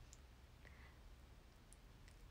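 Near silence: room tone with a low hum and a few faint, tiny clicks.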